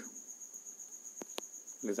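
A faint, steady, high-pitched pulsing trill of an insect in the background, with two soft clicks a little past the middle.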